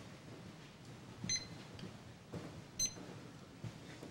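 Two short, high-pitched beeps, about a second and a half apart, over quiet room tone in a council chamber.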